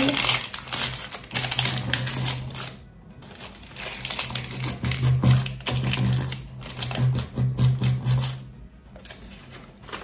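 Parchment baking paper crackling and crinkling as it is folded and pressed by hand around a drinking glass, a quick run of papery crackles that pauses briefly about three seconds in and again near the end. Background music with a low held note runs underneath.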